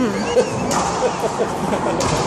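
Racquetball hit back and forth in a rally, with a couple of sharp smacks echoing in the enclosed court over a background of voices.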